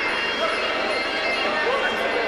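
Indistinct crowd noise in a sports hall, with scattered shouting voices.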